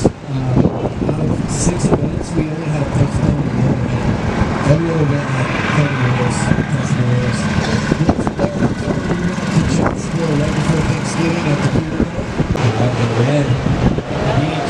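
Steady rush of breaking ocean surf and wind, with indistinct talking running through it.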